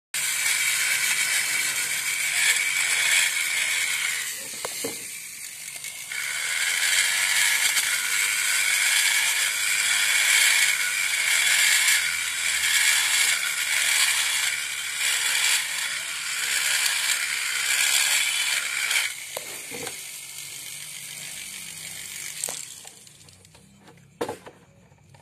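Handheld die grinder running with its bit in the ports of a Yamaha Jupiter MX cylinder head, grinding for porting and polishing: a steady high whine with a rasping edge. It stops briefly about four seconds in, then runs again until it eases off and quietens near the end.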